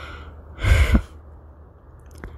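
A man's sigh: one short, breathy exhale about half a second in, with a low rumble at its start.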